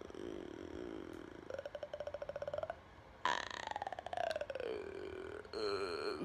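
A person burping: a rattling belch about a second and a half in, then a longer drawn-out one that falls in pitch.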